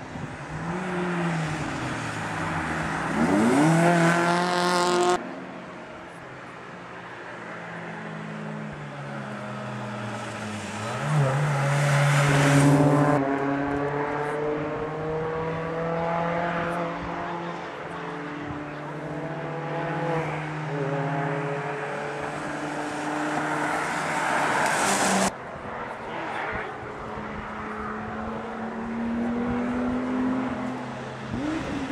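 Rally cars passing one after another at speed, their engines revving up and falling away as each goes by. The sound breaks off abruptly twice.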